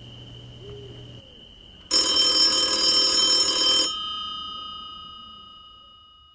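A bell ringing loudly for about two seconds, then stopping abruptly and ringing out in a slow fade.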